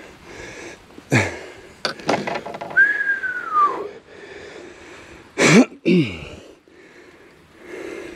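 A man whistles one long falling note of amazement, with loud breathy gasps and exclamations before and after it, a second or so in and again about five and a half seconds in.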